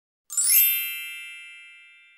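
Bell-like ding sound effect: a sharp attack about a third of a second in, then a bright chime that rings out and fades over about two seconds. It is the ding of a subscribe-button animation.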